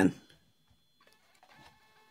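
A D11 Pro thermal label printer feeding out and printing a label, starting about a second in with a faint, steady motor whine.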